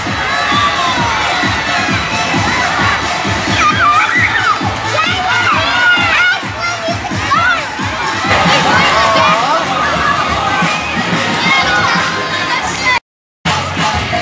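A crowd of young children shouting, shrieking and cheering, many voices at once, over a steady low beat. The sound cuts out completely for a moment near the end.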